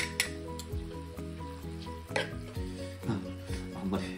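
Chicken pieces sizzling in a frying pan on low heat while ketchup and seasonings are added. Sharp clinks of a bowl and a metal spoon on the pan come at the start and again about two seconds in.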